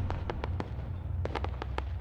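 Logo-reveal sound effect: a steady deep rumble with about nine sharp, scattered crackles, like firework sparkles.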